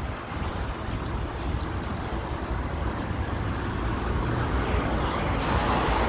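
Steady city street traffic noise with wind rumbling on the microphone, growing louder near the end.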